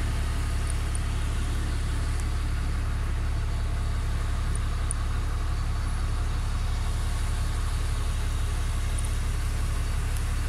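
Steady low rumble of outdoor city background noise, unchanging throughout, with a few faint tiny ticks.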